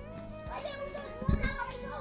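Children's voices talking over steady background music.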